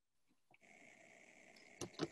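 Near silence: faint room tone with a soft steady hiss coming in about half a second in, and a couple of small clicks near the end.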